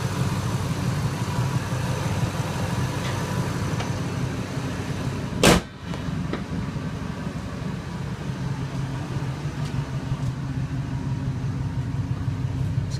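2001 Ford F-150's 5.4 L Triton V8 idling steadily, with one loud, sharp thump about five and a half seconds in.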